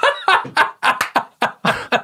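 A man laughing hard in a run of short, rapid bursts, about four or five a second.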